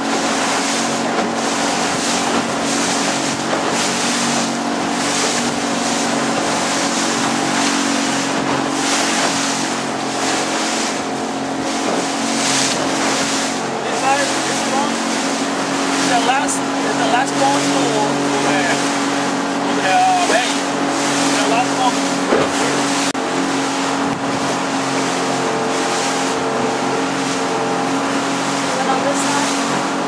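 Small boat's motor running steadily under way, with the rush of water and wind all through. About halfway through, faint voices can be heard under the motor.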